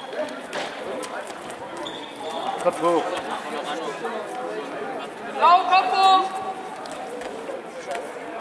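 Background chatter of voices in a large sports hall, with a loud, drawn-out shout about five and a half seconds in that rises and then holds its pitch. Scattered short thuds sound through it.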